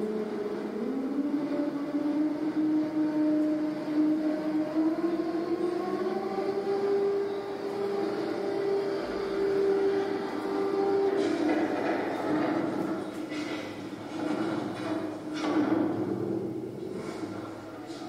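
Machinery sound from a documentary soundtrack played through a television speaker. A motor-like hum rises in pitch over the first several seconds and then holds. Several clanks and knocks come in the second half.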